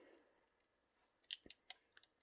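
Near silence with three or four faint short clicks in the second half, from fingers handling the small plastic wire plugs on an RC crawler's chassis.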